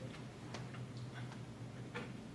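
Quiet room tone: a steady low hum with a few faint, scattered clicks and taps.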